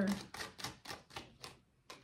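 Tarot cards being shuffled by hand, a quick run of light clicks about five a second that fades out after a second and a half, with one more click near the end.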